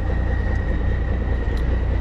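Steady low rumble of vehicle engines running nearby, with a faint steady high whine above it.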